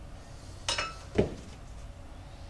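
Small metal parts clinking: a sharp, briefly ringing clink about two-thirds of a second in, then a duller knock about half a second later, as an ATV wheel-carrier part is handled and set down.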